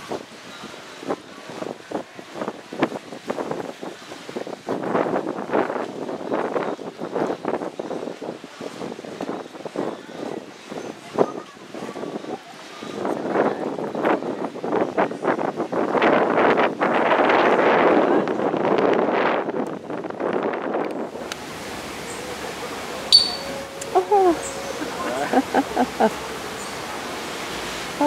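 Water splashing and lapping against rocks at the water's edge, with wind on the microphone, loudest in a surge over the middle-to-late part. About three-quarters of the way through the sound changes abruptly to a quieter background with a few short bird calls that rise and fall.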